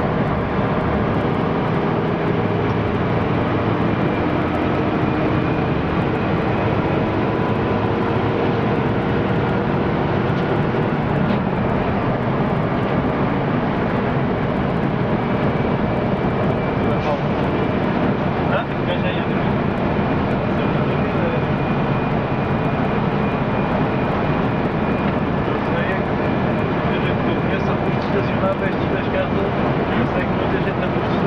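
A moving bus heard from inside the cab at the front, its engine and road noise making a steady, loud drone without a break.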